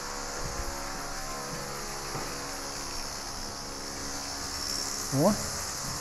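A steady machine hum made of several fixed tones, with a faint high whine above it, holding level without change.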